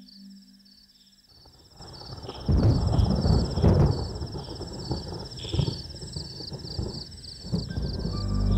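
Thunder rumbling in, starting about two seconds in out of near quiet, loudest for a second or two and then rolling on more softly.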